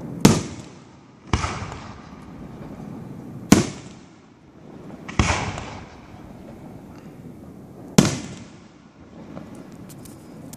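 Aerial firework shells bursting overhead: five sharp bangs spread over about eight seconds, each trailing off in a rolling echo.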